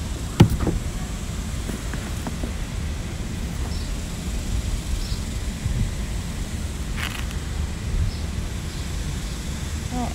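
Clothes being rummaged through and handled, with a sharp knock about half a second in, a short rustle around seven seconds, and a steady low rumble underneath.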